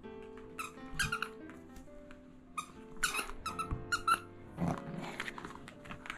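A rubber squeaky toy squeezed by hand, giving short high-pitched squeaks in several groups, about a second in and again around three to four seconds in, over background music.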